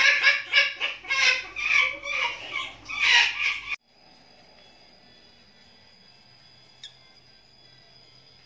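Newly hatched Eleonora's cockatoo chick calling in a rapid series, about two calls a second, which cuts off abruptly a little under four seconds in. After that only a faint steady high whine remains.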